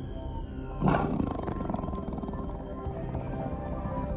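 A tiger roars once, loudest about a second in, over steady background music.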